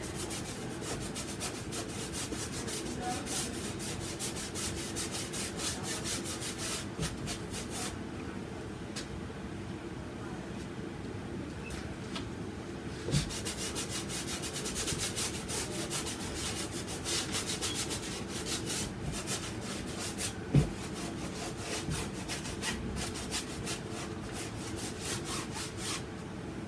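Stiff bristle brush scrubbing acrylic paint onto a stretched canvas in quick back-and-forth strokes, in two spells with a pause between, and a couple of sharp knocks against the canvas.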